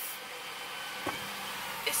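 Steady car cabin noise heard from inside the car: an even hiss with a faint low hum underneath.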